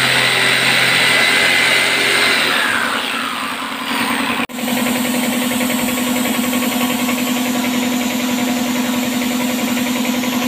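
Electric jigsaw cutting plywood, its motor winding down about two to three seconds in. After a brief break, a steady machine hum with a fast rhythmic pulse runs on to the end.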